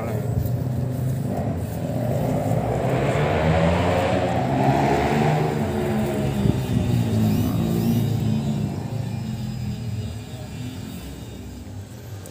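An engine running close by, its note swelling over a few seconds and then fading away, with a slowly bending pitch.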